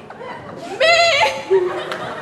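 A person imitating a goat's bleat: one short, slightly wavering call about a second in, over audience laughter and chatter.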